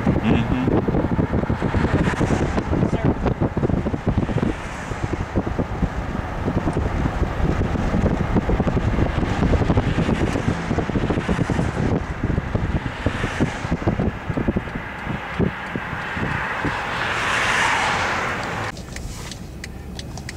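Road noise of a moving car with wind buffeting the microphone. A louder rushing hiss swells near the end and stops suddenly.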